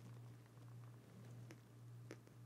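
Near silence: room tone with a faint steady low hum and a faint tick about one and a half seconds in.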